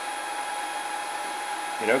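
Steady machine whir with a thin, steady whine running under it.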